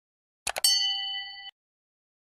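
Two quick mouse-click sound effects about half a second in, followed at once by a bell-like ding that rings for about a second and cuts off abruptly: the notification-bell chime of a subscribe-button animation.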